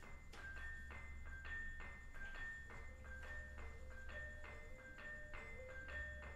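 Gamelan ensemble playing quietly: bronze metallophones struck in a quick, even pulse of about three strokes a second, alternating between two high notes. From about halfway, a lower line of notes joins in, stepping up and down.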